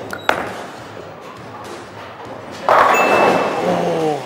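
A bowling ball lands on the lane with a sharp thud just after release and rolls down the lane. About two and a half seconds later it crashes into the pins with a loud clatter that goes on to the end, a strike. A man's voice exclaims near the end.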